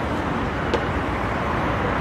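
Steady road-traffic noise, with one short click about three quarters of a second in.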